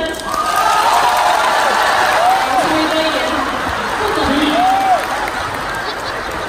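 Theatre audience applauding, with a couple of voices whooping over the clapping, about two seconds in and again near five seconds.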